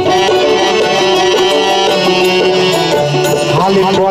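Live Baul folk music in an instrumental passage: a plucked long-necked lute plays a quick melody over sustained accompanying tones. A man's singing voice comes in near the end.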